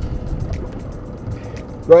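Steady low rumble of wind and water around a small boat at sea, with a man's voice starting again at the very end.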